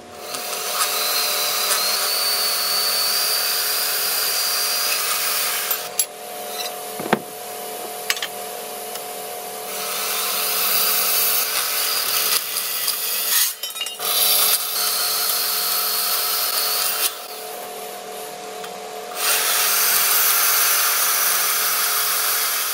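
Portable band saw running and cutting through steel angle iron: a steady motor hum throughout, with the harsh cutting noise coming in long stretches and easing off a few times in between as the blade bites and lets up.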